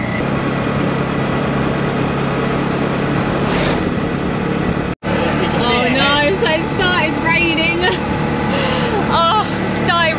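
Tuk-tuk engine running at road speed, heard from inside the open cabin with wind and road noise. A cut about halfway through briefly drops the sound out, and after it high wavering voice-like sounds ride over the engine.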